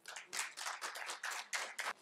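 Light, scattered applause from an audience, faint and thin: a quick irregular patter of hand claps that starts shortly after the beginning and fades out just before the end.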